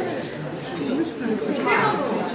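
Indistinct chatter of several young people talking at once, teams conferring among themselves.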